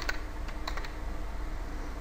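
A few computer keyboard keystrokes, bunched in the first second, while a line of Visual Basic code is edited.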